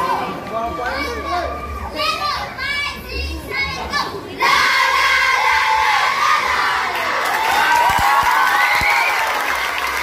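A large group of schoolchildren shouting a group yell, many voices at once, with the crowd's voices mixed in. The shouting gets suddenly louder about four and a half seconds in.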